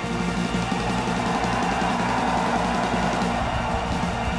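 A live rock band plays steadily, a full band with electric guitar and drums.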